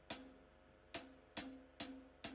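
Drum kit played as single, separate strokes, each ringing briefly: four in all, the first pair almost a second apart, then under half a second apart, opening a dangdut koplo song before the band comes in.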